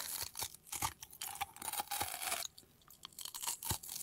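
Close-miked crunching and chewing of a crisp puffed-grain bar, a run of scattered sharp crackles with a short pause about two and a half seconds in.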